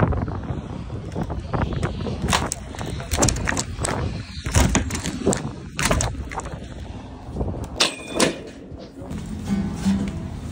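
Irregular footsteps and knocks on plywood sheets and a trailer floor, with a brief high squeak about eight seconds in.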